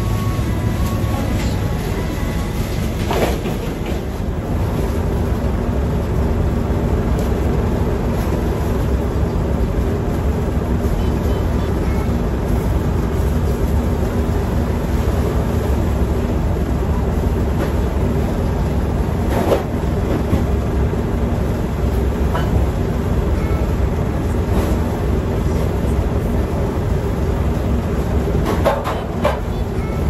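Steady low machine rumble with a constant hum, from the machinery of a building's garbage room, with a few brief knocks as plastic garbage bags are handled.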